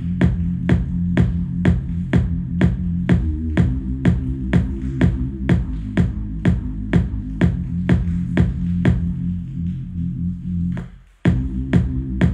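Electronic beat in progress playing back in a loop: a steady drum hit about twice a second over held synth bass notes that change pitch a couple of times. Near the end the music dies away for a moment, then the loop starts over.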